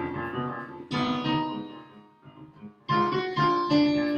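Piano playback of a passage in Spanish Phrygian mode: a bass line moving under held melody notes. New notes are struck about a second in and again near the three-second mark.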